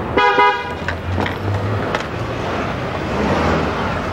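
A car horn gives a short honk in the first half second, followed by steady street traffic noise with a low engine rumble.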